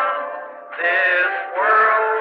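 Hymn singing on an old tape recording, with a thin sound lacking deep bass and high treble. A held note fades away, then new sung phrases begin about two-thirds of a second in and again near the end.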